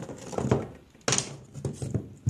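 A few knocks and scrapes as wire cutters and old wiring are handled on the wooden ceiling boards.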